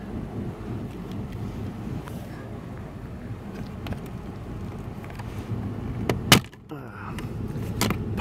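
Plastic fuse box cover under a Toyota RAV4's dashboard being pried at by hand, with small clicks and one sharp snap about six seconds in as its clip lets go, over a steady low hum.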